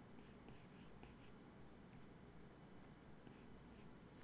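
Faint strokes of a stylus on a tablet's glass screen, an Apple Pencil drawing on an iPad Pro: a quick run of about six short scratches in the first second and a half, then two more near the end, over low room tone.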